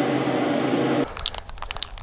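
A steady mechanical hum, like a room fan or air conditioner, that cuts off abruptly about halfway through, leaving a quieter stretch of scattered small clicks and crackles.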